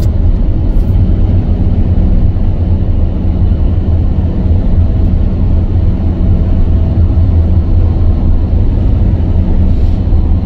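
Steady low rumble of engine and tyres from a vehicle travelling at motorway speed.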